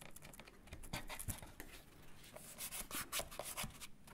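Faint rubbing and light scratching as fingers press strips of tape onto corrugated cardboard and handle the glued cardboard pieces, with small irregular clicks and taps.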